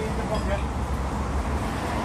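Steady low rumble of outdoor background noise, with faint voices of bystanders briefly near the start.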